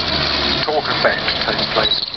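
Commentator's voice over a public-address loudspeaker, words indistinct, with a low steady drone underneath that stops about half a second in.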